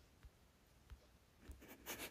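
Near silence with faint rustling and a few soft clicks, thickening into a brief scratchy rustle near the end: movement close to a phone's microphone.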